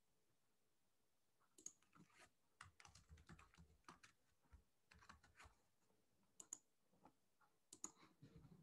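Faint typing on a computer keyboard: a run of irregular keystrokes in the first half, then a few scattered clicks.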